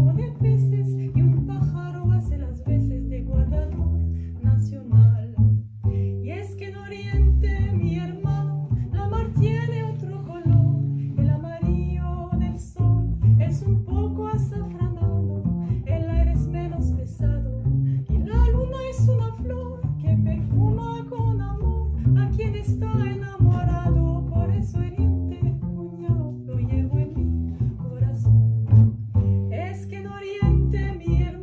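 Two double basses played pizzicato in a Venezuelan merengue groove, with a woman's voice singing a melody over them.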